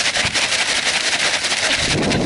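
A paper In-N-Out fry bag shaken hard and fast, a loud rapid papery rattle that starts suddenly, to coat the fries inside with ketchup.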